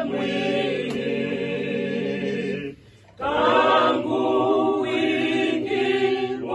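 A small choir singing a cappella. The singing breaks off briefly about three seconds in, then picks up again.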